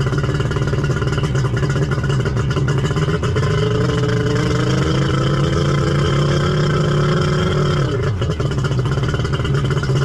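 Two-stroke three-cylinder Kawasaki 1100 engine in a jet ski running tied at a dock and held above idle. Its pitch climbs slowly for several seconds, drops sharply about eight seconds in, then picks back up.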